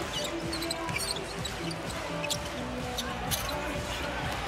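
A basketball being dribbled on a hardwood court, with scattered bounces under background music with held notes.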